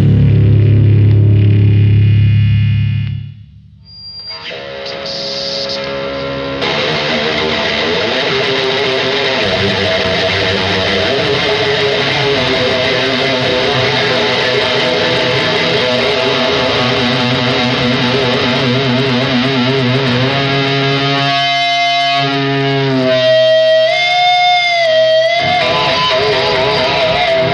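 Live heavy band music: a loud distorted riff stops abruptly about three seconds in, then an electric guitar plays on through effects, with sustained notes and bending pitch near the end.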